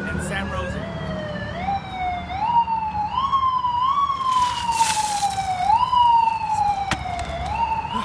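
A siren wailing, its pitch rising quickly and falling slowly over and over. About four seconds in, a short splash of ice water is poured from a bucket over a person.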